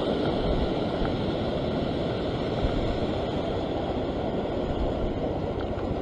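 Ocean surf washing over a rock platform, with wind buffeting the microphone: a steady rushing noise with a low rumble.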